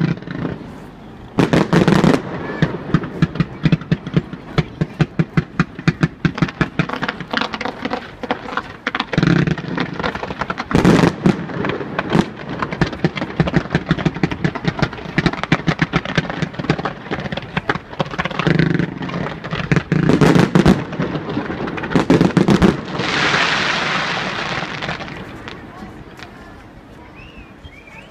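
Fireworks display: a rapid, dense string of bangs and crackles from comets and small shells, with heavier booms several times. Near the end there are a couple of seconds of steady rushing hiss.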